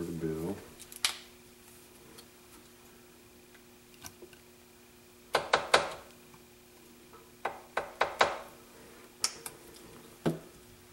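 Light clicks and clinks of hand-painting tools, a brush and small hard items knocking against a paint jar or the tabletop: one about a second in, a quick cluster around the middle, and several more in the last few seconds. A faint steady hum runs underneath.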